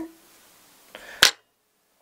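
Small fly-tying scissors snipping once, sharp and brief, about a second in, cutting off the excess hackle feather close to the hook, with a faint rustle just before the cut.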